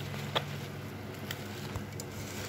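A hand mixing spice-coated raw mango pieces in a steel bowl: faint wet squishing, with a sharp click of a piece against the bowl about half a second in. A steady low hum runs underneath.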